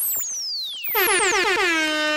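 DJ air-horn sound effect in a club mix intro: sweeping synth pitch glides, then about a second in a rapid stuttering horn blast whose pitch drops and settles into one held tone.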